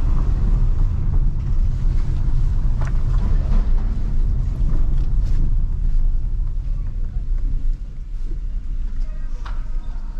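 Maruti Suzuki Ciaz sedan heard from inside the cabin, moving slowly over a rough village lane: a steady low rumble of engine and tyres, with a few faint knocks.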